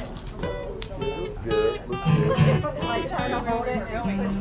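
Acoustic guitar played loosely, a few plucked notes and strums, under people talking.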